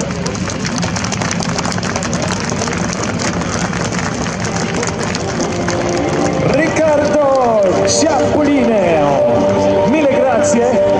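Aermacchi MB-339 jet trainers' turbojet engines at take-off power as a formation rolls down the runway, a loud crackling jet roar. From about seven seconds in, several engine whines fall in pitch one after another as jets go by, then a steady whine holds.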